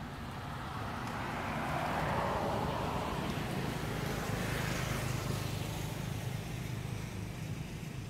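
A road vehicle driving past, its noise swelling over the first couple of seconds and fading away near the end, over a steady low rumble.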